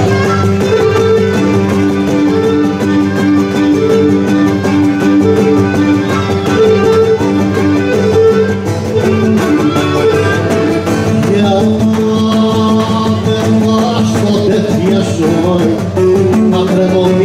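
Live Cretan folk dance music, loud and unbroken, with plucked string instruments playing the melody.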